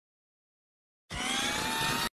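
Sound effect of a multirotor drone's motors: a slowly rising whine over a loud rushing hiss that starts about a second in and cuts off abruptly.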